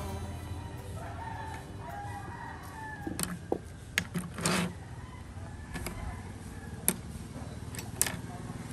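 A rooster crows in the background. Then come a few sharp clicks and knocks of colored pencils being handled on a table, the loudest about four and a half seconds in.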